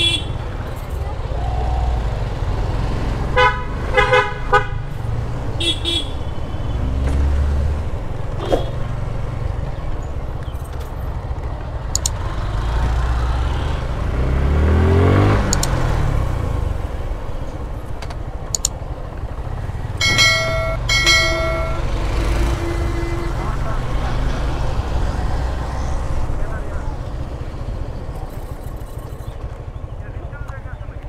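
Motorcycle ride with a steady rumble of engine and wind. Several short horn honks come a few seconds in, and two more come about two-thirds of the way through. Around the middle an engine revs up and back down.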